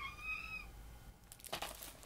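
A faint, short, high-pitched cry lasting under a second at the start, slightly rising in pitch, over a low room hum.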